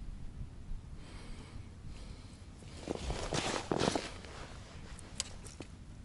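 A man breathing out heavily twice, about three and four seconds in, over faint rustling, with a couple of small clicks a little after five seconds.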